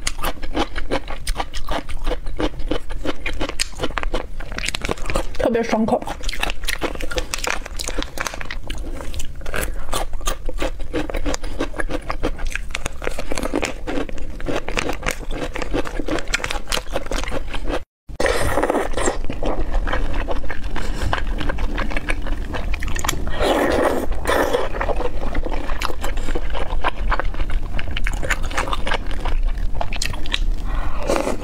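Close-miked mouth sounds of crunching and chewing pickled bamboo shoots bitten from their plastic packets, with many short crisp crunches. After a brief dropout partway through, the chewing continues on pieces of spicy stew.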